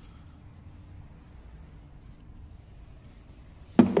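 Quiet workshop room tone with a faint steady hum, then near the end a single sharp clunk as an engine piston is set down.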